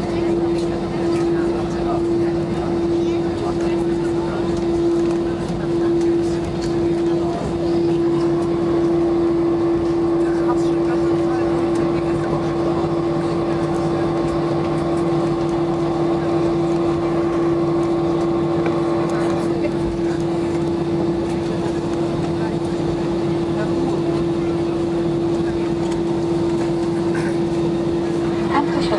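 Cabin noise of an Airbus A320-214 rolling and taxiing after landing: the CFM56 engines at idle give a steady rumble with a constant hum. From about eight seconds in, a higher whine joins for about eleven seconds as the flaps retract, then stops.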